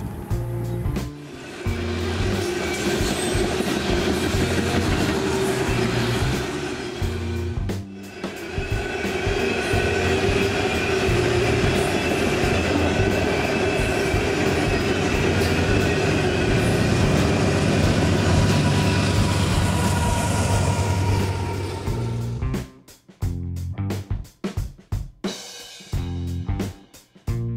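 Freight train rolling past close by: a steady heavy rumble and rail noise from the cars, with a steady high whine over it. Near the end it gives way to music with a beat.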